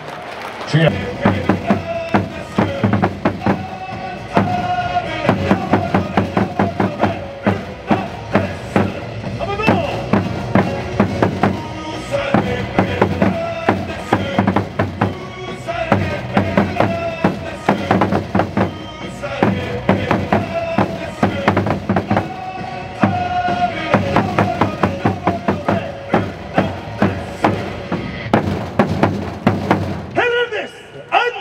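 Baseball cheer music with a melody and singing, driven by loud, regular drum beats from a cheer-section drum beaten with padded mallets close by.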